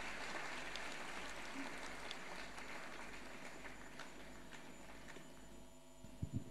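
Applause from a large audience, faint and slowly dying away.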